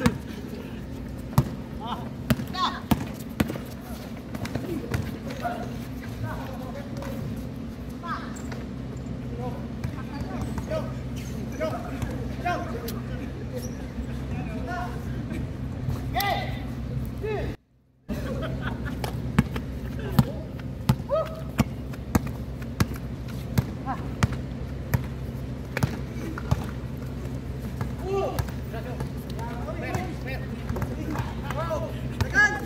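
Basketball dribbled and bouncing on an outdoor hard court, a string of sharp bounces at an uneven pace, with players shouting and talking over a steady low hum. The sound cuts out for a moment just past the middle.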